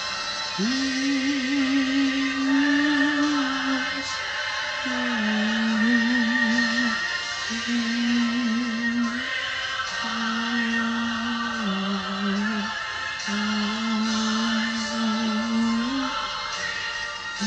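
Slow worship song: a singer holds long notes with vibrato, one every couple of seconds, stepping between pitches over steady instrumental accompaniment.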